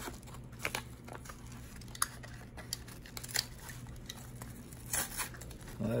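A mail package being opened by hand: scattered crinkles and short tearing sounds of its packaging, with a few sharper clicks among them.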